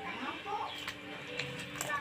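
Faint background voices and music, with a couple of light clicks.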